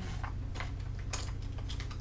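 Makeup items clicking and clattering as a hand rummages through an open makeup train case: a handful of separate light clicks.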